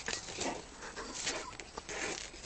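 Two cats wrestling on dry leaves and paving: faint scuffling with a few soft animal vocal sounds and brief clicks.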